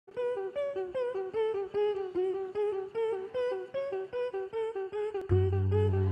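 Vocal beatboxing into a microphone: a hummed melody of short pitched notes, about four a second, each starting on a sharp click. Near the end a loud, steady, deep bass tone comes in beneath it.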